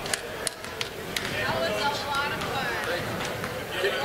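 Children's voices chattering and calling out in a gymnasium, with several basketball bounces on the hardwood floor in the first second or so.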